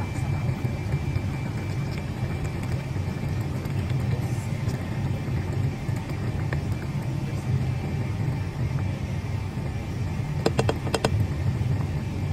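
A pot of soup boiling on the stove, a steady low rumble with a hiss over it. A quick run of sharp clicks comes near the end.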